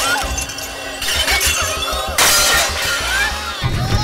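Comic film background music with a sudden loud crash of something breaking and shattering about two seconds in.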